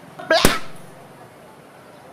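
A man's brief exclamation with a sharp click in it about half a second in, trailing off by about a second into a steady low hiss.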